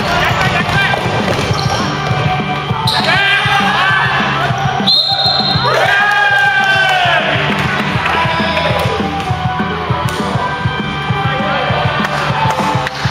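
Basketball bouncing on a wooden gym floor during play, with players' shouts in the middle, over background rock music.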